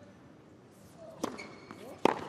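A tennis serve: one sharp crack of racket strings striking the ball a little past a second in, then a second, louder hit right at the end, against a hushed stadium.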